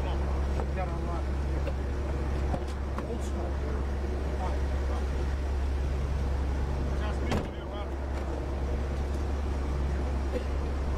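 Van engine idling with a steady low rumble, faint voices talking beside it, and one sharp knock about seven seconds in.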